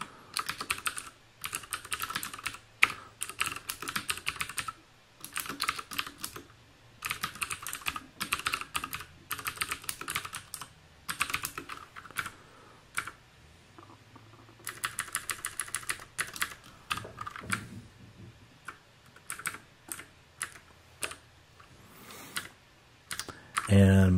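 Typing on a computer keyboard: runs of rapid keystrokes broken by short pauses.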